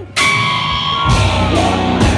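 Live rock band with a female singer, electric guitar, bass and drums playing loud. The music drops out for a split second at the start, then the full band comes straight back in with held high notes over the drums.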